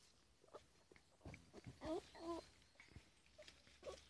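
A puppy giving two short whining yips, one right after the other about two seconds in, over faint scratching from its paws.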